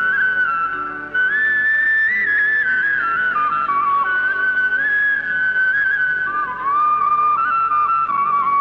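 Background film music: a solo flute plays a slow melody of long held notes that step and slide between pitches, over soft low accompaniment.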